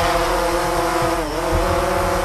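Small quadcopter drone's propellers buzzing as it flies, a steady whine that dips briefly in pitch a little past the middle and then recovers.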